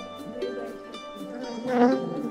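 Honey bees buzzing at an open hive, with one bee passing close and loud near the end. Soft plucked-string background music plays underneath.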